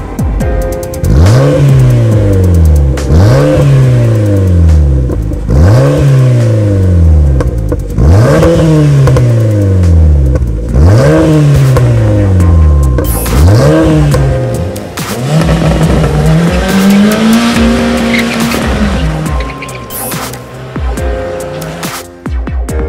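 Suzuki Swift engine revved through an HKS Hi-Power titanium muffler: sharp revs about every two seconds, six in a row, the pitch dying away after each. Near the end comes a longer rev, held for a couple of seconds before it drops. Background music plays underneath.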